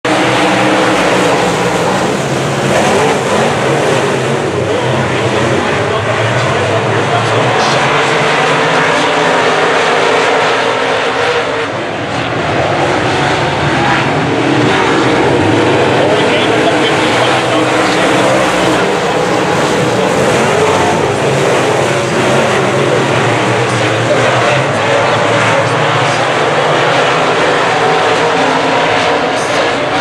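A field of USRA A-Modified dirt-track race cars racing around the oval, their V8 engines running loud and steady throughout, with a brief dip in loudness about twelve seconds in.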